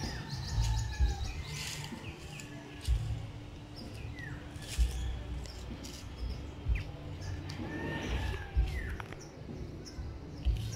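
Birds chirping and calling in the trees, short chirps and a few falling whistled calls, over a low rumble with several low thumps.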